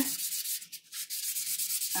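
A chert-based fossil rubbed by hand on wet 1000-grit wet/dry sandpaper, a fine gritty scratching of stone on abrasive paper, with a brief pause a little before the middle.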